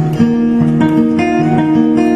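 Acoustic guitar playing an instrumental passage of a slow, melancholy song: plucked notes change every few tenths of a second over lower notes that keep ringing.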